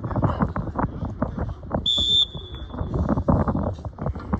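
A single short whistle blast about halfway through: one steady, shrill tone that fades off quickly, over continuous sideline noise.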